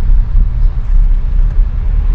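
Low engine and road rumble inside a Suzuki car's cabin while the learner shifts the manual gearbox. The gears grind because the clutch pedal is not pressed fully.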